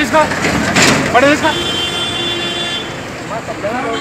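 A vehicle horn sounds one steady note, held for about a second and a half, with people's voices before and after it.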